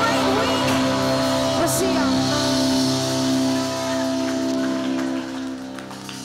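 Live worship band music: a held keyboard chord with guitar, fading down about five seconds in.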